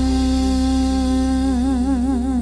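Closing bars of a gospel song: a female singer holds one long, low, wordless note over a sustained low chord, with vibrato coming into the note about three-quarters of the way through.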